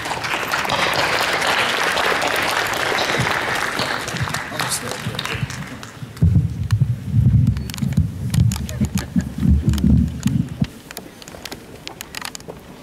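Audience applause fills the first five seconds or so and fades away. From about six seconds in there are several seconds of loud, irregular low thuds and rumbles.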